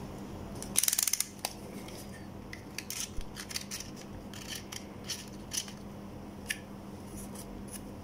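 Handling noise from a switch-mode power supply circuit board being turned over in the fingers above paper. A short, rapid rattling scrape comes about a second in, followed by scattered light clicks and rubs, over a steady low hum.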